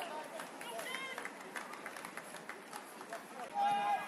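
Voices shouting on a football pitch during play: short calls about a second in and a louder, held shout near the end.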